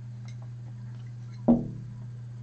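A single sharp clink of tableware about one and a half seconds in, ringing briefly as it dies away, over a steady low hum.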